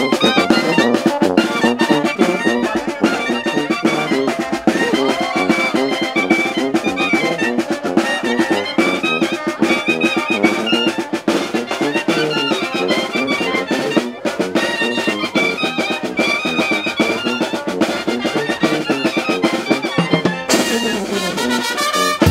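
Live Mexican brass band (banda) playing: clarinets and brass carry the melody over a sousaphone bass line and a steady beat on bass drum and cymbal. The sound changes abruptly near the end.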